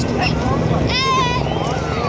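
Helicopters flying overhead: a steady low drone of rotors and engines. A voice calls out briefly about a second in.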